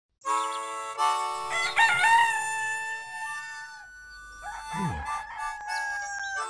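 Rooster crowing, a long wavering cock-a-doodle-doo, over sustained music notes.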